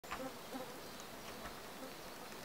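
Honey bees buzzing as they fly around the hives, with short passes that come and go and are loudest in the first half-second or so.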